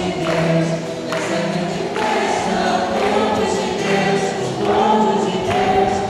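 A congregation singing a hymn together in long held notes, with a sharp beat, likely hand claps, about once a second.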